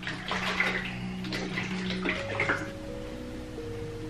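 Liquid sloshing as a carton of protein shake is shaken, in the first two and a half seconds, over background music with sustained notes.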